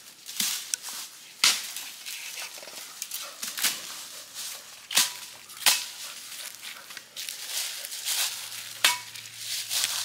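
Dry leaves and brush crunching and snapping as undergrowth is cleared by hand, with about six sharp knocks spread through it, two of them carrying a short metallic ring.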